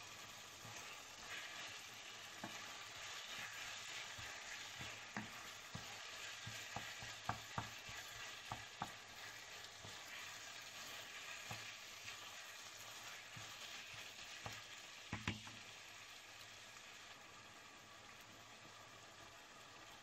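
Diced chicken breast, onion and bell peppers sizzling faintly in a non-stick frying pan, with a wooden spoon stirring and now and then tapping and scraping on the pan. The loudest tap comes about fifteen seconds in.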